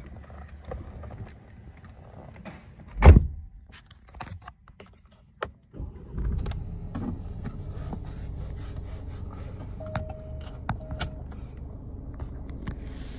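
2018 Alfa Romeo Giulia's 2.0-litre turbocharged four-cylinder engine starting about six seconds in, flaring briefly, then settling into a steady idle. A loud thump comes about three seconds in, and a short steady beep sounds near the end.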